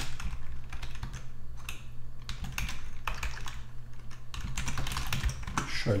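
Typing on a computer keyboard: irregular keystroke clicks with a short pause in the middle, over a steady low hum.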